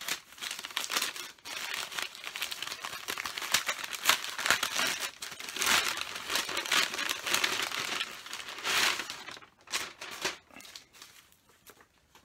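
A brown paper mailer being torn and crinkled open by hand as a stack of comic books is worked out of it. Dense paper crackling for most of the time, thinning to a few scattered crinkles near the end.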